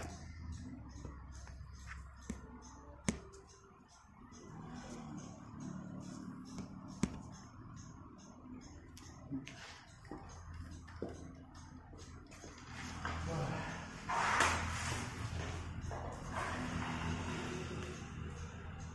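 Workshop work under a jacked-up car: a few scattered light metallic clicks and knocks, then a louder stretch of rustling and scraping in the last few seconds as someone moves under the front of the car.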